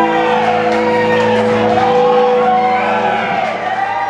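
A live rock band's closing chord ringing out on electric guitars, with audience members whooping and shouting over it; the sound begins to fade near the end.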